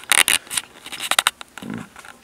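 Two short bursts of scraping and rustling, one at the start and one about a second in, from a handheld phone being swung and rubbed while filming.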